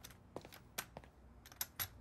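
Faint footsteps and a forearm crutch tapping on the floor: about ten light, irregular taps and clicks as someone gets up and walks a few steps.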